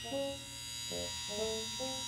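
Cartoon mobile crane's winch motor whining steadily as it lifts a load, with a few short, stepping musical notes over it.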